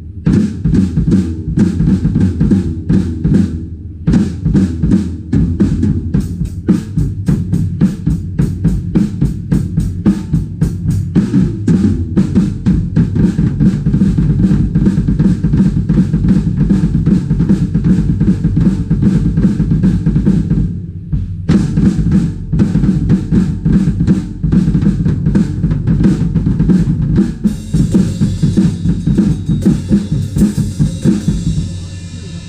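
Acoustic drum kit played with rapid, continuous bass-drum strokes from a double pedal under snare and tom hits. The playing breaks off briefly about two-thirds of the way through, then resumes, with cymbal wash near the end.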